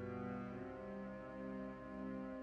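Church organ and cello playing slow sacred music together: sustained organ chords under a low held note, with the cello bowing long notes above.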